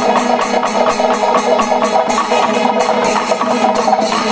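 Kerala Panchavadyam temple ensemble playing loudly: timila and maddalam drums with ilathalam cymbals clashing in a fast, even rhythm that does not let up.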